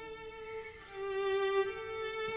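A string quartet of two violins, viola and cello playing a quiet passage of long held notes, with a fresh note swelling in about a second in.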